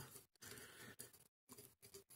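Near silence, with faint handling noise and a few faint short clicks from the metal clamp of a knife sharpener as its thumb screw is turned by hand.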